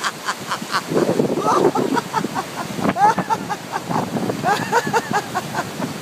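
A man laughing loudly in a long unbroken run of rapid 'ha-ha' pulses, several a second, broken by a few rising whoops. It is a deliberate laugh, started on purpose as a laughter-therapy exercise.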